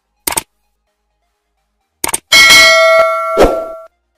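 Subscribe-button animation sound effects: a single mouse click, then a quick double click about two seconds in, followed by a bright bell ding that rings on with several steady tones for about a second and a half, with a thump near the end.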